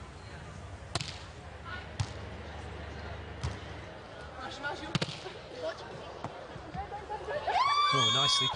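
Sharp slaps of hands striking a beach volleyball during a rally, with single hits spread about a second apart. Near the end there is a loud high-pitched held tone.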